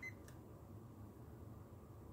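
Near silence: faint room tone, with one soft click shortly after the start.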